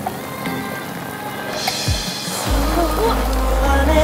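Background music for a TV promo. A whoosh sweeps through about halfway, and a deep bass line comes in just after it.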